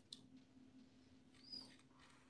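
Near silence: faint room tone with a low steady hum and a few faint ticks. A brief faint high squeak comes about one and a half seconds in.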